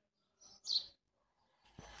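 Two brief high-pitched bird chirps close together, the second louder.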